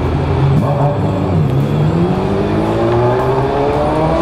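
Yamaha Ténéré 250's single-cylinder engine running at low speed, then pulling up through the gear with a steady rise in pitch from about two seconds in.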